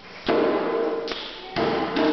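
Djembe struck by hand: a strong stroke just after the start, a lighter one about a second in, and another strong stroke soon after, each ringing briefly.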